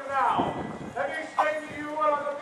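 A voice talking, opening with a drawn-out falling call.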